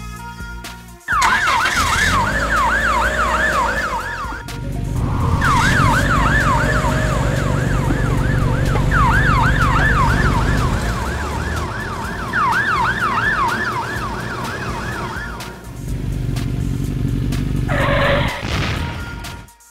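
Ambulance siren sound effect in fast rising-and-falling yelp sweeps, about three a second, over a low rumble. It breaks off briefly about four seconds in, starts again and stops a few seconds before the end.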